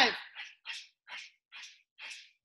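Short, sharp hissed exhales, one with each punch thrown in a Muay Thai boxing combination, coming about two a second, after the tail of the called-out number 'five' at the start.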